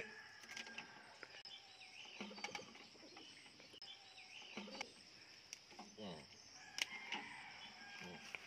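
Steady high-pitched insect drone with faint bird chirps over it. A few faint low voices come in the middle, and there is one sharp click near the end.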